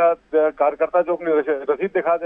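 Speech only: a man talking in Hindi, with no other sound.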